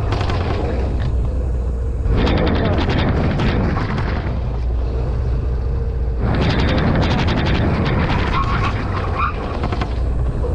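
Wind buffeting the microphone of a camera mounted on a moving Suzuki Burgman Street EX 125 cc scooter, over a steady low rumble of the scooter running. The wind rushes up twice, from about two seconds in to about four and again from about six seconds on, as the scooter speeds up for brake-test runs.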